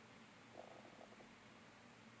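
Near silence: faint room tone, with a few very faint soft ticks about half a second to a second in.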